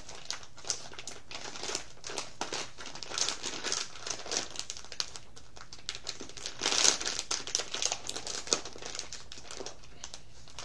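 Irregular crinkling and rustling as something crinkly is handled close to the microphone, with a louder burst about seven seconds in.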